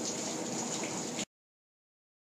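Water from a heavy leak under a building, splashing steadily into a pool of standing water in the crawlspace. The splashing cuts off abruptly just over a second in.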